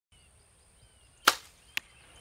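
A compound bow is shot: a sharp crack as the string is released about a second in. About half a second later comes a shorter, quieter smack, as of the arrow striking the target. Faint birdsong sits underneath.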